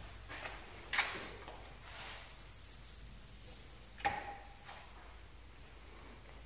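Wall toggle switch clicking about a second in, with a second click about four seconds in. From about two seconds in, a steady high-pitched whine runs for roughly three seconds and then fades.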